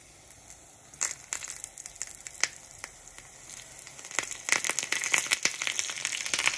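Hot oil crackling and spattering in a frying pan: scattered sharp pops at first, thickening into a denser sizzle from about four seconds in.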